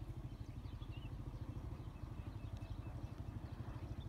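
A steady low rumble that flutters rapidly, with a few faint, short chirps of small birds.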